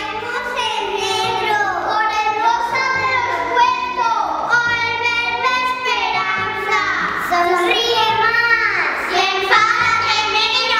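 A song with children's voices singing over instrumental backing music.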